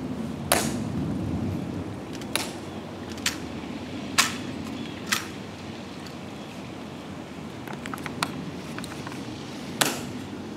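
Sharp, separate clicks, about seven spread unevenly over a low steady background: the Tomb guards' metal-tapped heels striking the stone plaza as they march and halt.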